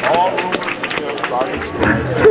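A man's voice speaking or shouting through the club PA over crowd noise, the band not playing, with a low amplifier hum.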